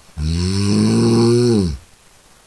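One loud human snore, about a second and a half long, beginning just after the start; its pitch rises slightly and then drops as it ends.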